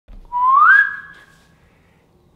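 A single whistled note that glides upward in pitch, is held, and fades away over about a second.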